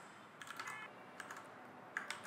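Faint typing on a computer keyboard: a few soft key clicks.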